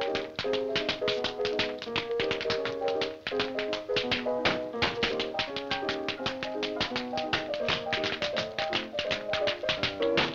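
Two dancers' tap shoes striking the floor in quick, rhythmic steps over a music accompaniment.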